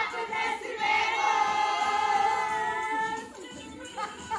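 A group of women singing together in unison, holding one long note that fades out a little after three seconds.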